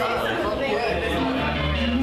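Several voices chattering in a large room, with music coming in about a second in: low, held bass notes under the talk.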